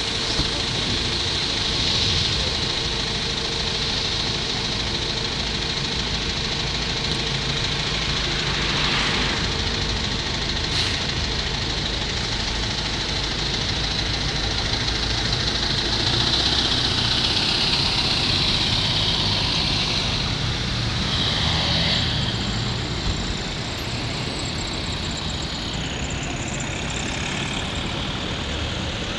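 City bus engines idling at a stop with street traffic running steadily behind; a passing vehicle swells up and fades away about two-thirds of the way through.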